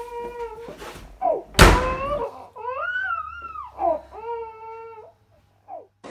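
A person crying in long, high wails that rise and fall, with a loud thud about one and a half seconds in as a door bangs shut.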